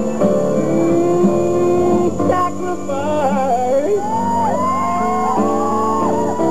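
A live gospel band playing: held keyboard chords, with a lead melody of bending, gliding notes coming in about two seconds in.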